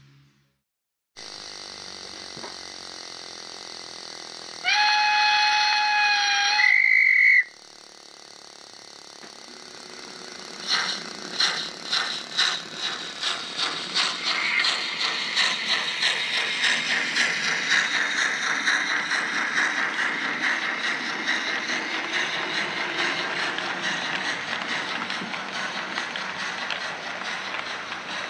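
Steam locomotive whistle blowing for about two seconds, with a higher note at its end, over a steady hiss. A few seconds later the locomotive starts chuffing as it pulls away, the exhaust beats starting slowly and quickening until they blur into a steady rush.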